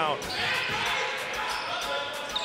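Basketball game sounds on a gym court: a steady wash of crowd noise, with the ball bouncing on the hardwood floor.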